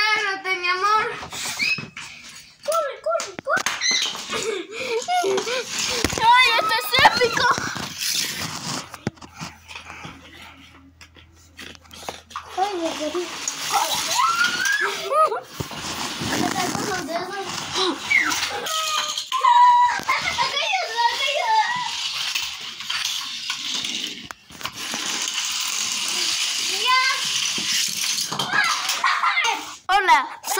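Children's voices, high-pitched and excited, with no clear words, in a small room.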